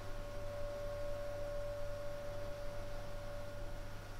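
A hand-held five-metal singing bowl ringing with one clear, steady high tone that thins out near the end, over a low steady hum.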